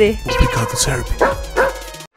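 Small dog yipping and barking a few times over background music.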